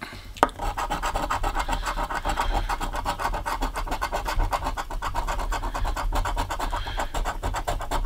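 A coin scratching the coating off a scratch-off lottery ticket: a sharp click about half a second in, then rapid back-and-forth rasping strokes.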